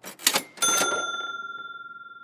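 Logo-animation sound effect: a couple of quick noisy hits, then about half a second in a bright bell-like ding that rings on one pitch and slowly fades.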